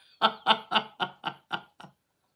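A woman laughing in a run of about seven short bursts, roughly four a second, that fade toward the end.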